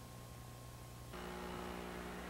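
Low electrical mains hum with steady hiss. About halfway through, the hum changes to a different tone and the hiss rises slightly, as when the audio feed switches.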